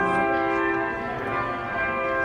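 Slow organ music: sustained chords held and changing, with a low bass note dropping out just after the start.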